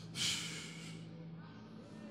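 A short, sharp rush of breath, like a snort or gasp, close into a handheld microphone about a quarter of a second in, then fading. A faint low held tone runs underneath for the first second and a half.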